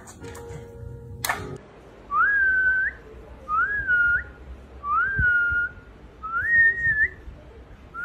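A person whistling four short notes about one and a half seconds apart, each sliding up and then held. Before them, in the first second and a half, there are a few sharp clicks and short tones.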